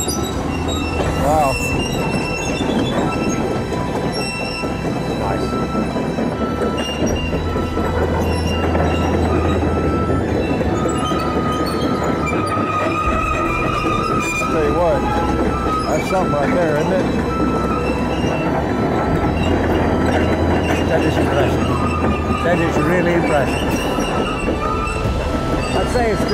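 Tracked Caterpillar excavator pivoting in place on a concrete slab: its steel track shoes squeal and grind against the surface over the steady running of its diesel engine, with wavering squeals coming and going.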